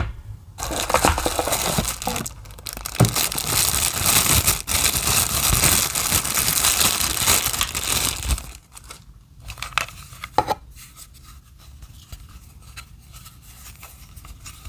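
Clear plastic bag crinkling loudly and without a break for about eight seconds as a power adapter is worked out of it. Then quieter handling, with one sharp click a couple of seconds later.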